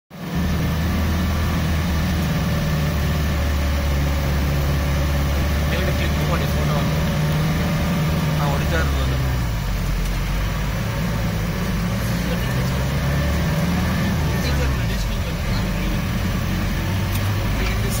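Car engine running at low speed, heard from inside the cabin as a steady low hum, with heavy rain hitting the windscreen and roof.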